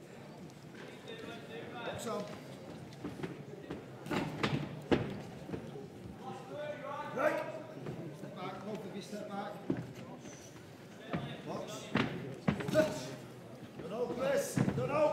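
Scattered thuds of gloved punches and feet on the ring canvas during a clinch, at irregular intervals, over faint distant voices.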